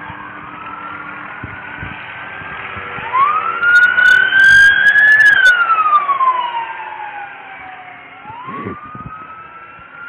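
Several emergency-vehicle sirens wailing at once. One grows loud about three seconds in, holds at its top pitch, then falls slowly away, and another rises again near the end.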